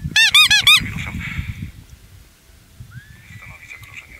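A squeeze toy pressed by hand gives four quick, loud squeaks, each rising and falling in pitch, in the first second.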